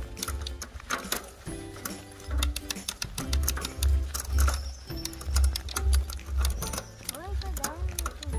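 Bicycle chain running over a rear cassette with rapid ticking and clicks as the rear derailleur shifts gears while the bike is pedalled, with background music playing throughout.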